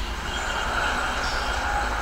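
Steady low rumble with an even hiss over it, the background noise of the recording, with no change or distinct event.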